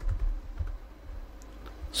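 A few faint keystrokes on a computer keyboard as a short chat message is typed and sent, with a soft low thud at the very start.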